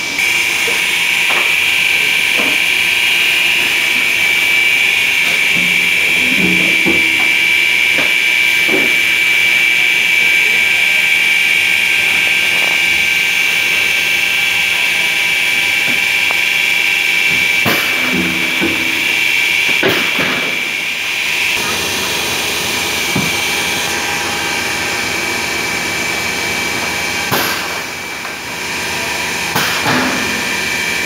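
Blister packaging (thermoforming) machine running: a steady high-pitched whine over machine noise, with short knocks and clunks every few seconds.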